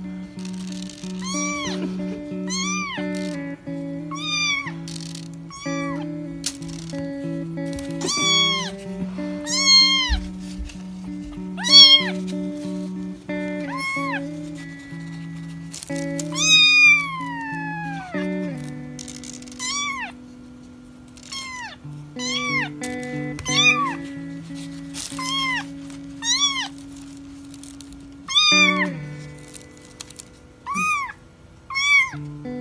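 A newborn kitten mewing again and again, high-pitched cries about once a second, with one longer mew that falls in pitch about 17 seconds in. Background music with long held notes plays underneath.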